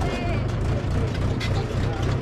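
Farm tractor engine running steadily with a low hum, heard from on board the tractor and its trailer.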